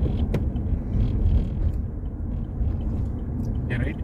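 Steady low rumble of a moving car heard from inside the cabin, with a single sharp click about a third of a second in.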